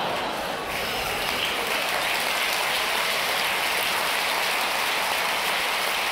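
Live comedy audience applauding in a dense, steady patter, the clapping swelling about a second in.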